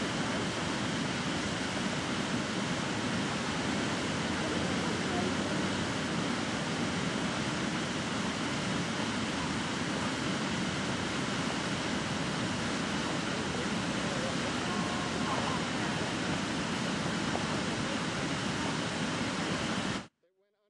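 Steady rushing noise of fast-flowing floodwater, with faint voices now and then.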